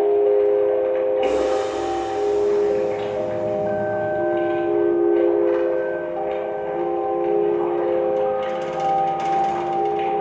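Drum kit played with soft mallets in a slow, droning improvisation: layered steady ringing tones that overlap and shift in pitch every second or two, over soft mallet strokes on the drums. A brighter, noisier hit comes about a second in.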